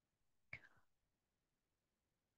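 Near silence, broken once about half a second in by a brief faint sound from a person's voice, like a soft breath or murmur.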